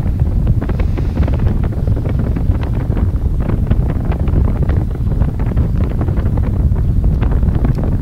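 Falcon 9 first stage's nine Merlin engines heard from the ground during ascent: a steady deep rumble with dense crackling.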